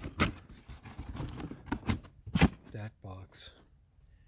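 Cardboard boxes being handled and shifted by hand: a few knocks and scrapes of cardboard, the loudest just after the start and about halfway through, then quieter near the end.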